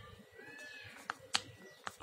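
Ballpoint pen writing on paper on a clipboard: faint scratching with a few sharp taps, the loudest about a second and a half in. A faint drawn-out tone that rises and falls sounds in the background about half a second in.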